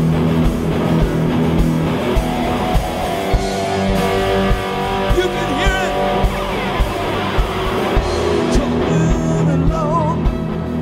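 Live rock band playing: electric guitars over a steady beat.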